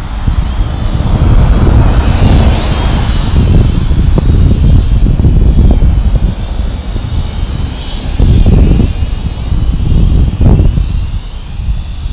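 Small quadcopter's propellers whining as it hovers and turns, their pitch wavering with the stick inputs, under a loud, uneven low rumble.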